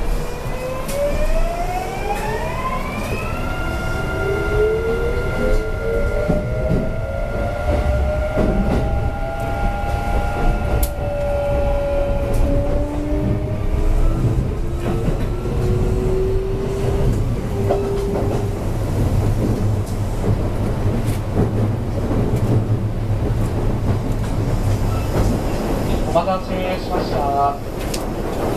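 Kintetsu 5820 series electric train accelerating away from a station, heard from inside the car. Its Mitsubishi IGBT VVVF inverter and traction motors whine in several tones that climb in pitch over the first few seconds, hold steady, then give way to lower tones that keep rising as speed builds. These fade after about 18 seconds into a steady rumble of wheels on rail with occasional clicks.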